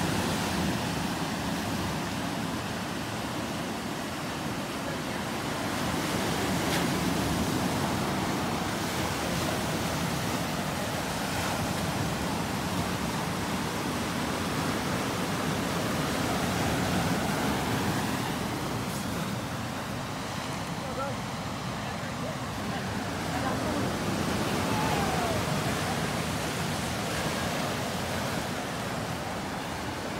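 Ocean surf breaking on a sandy beach: a steady rush that swells and ebbs every several seconds.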